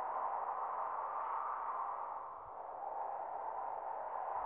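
Soft, steady, airy drone from the background score, dipping slightly in level a little past the middle.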